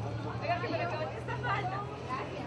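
Indistinct talking and chatter from several people, over a steady low hum.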